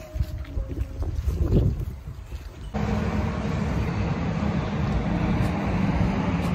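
Wind buffeting a phone microphone beside a road, with road traffic behind it. About three seconds in, the sound switches suddenly to a louder, steady rush with a low hum.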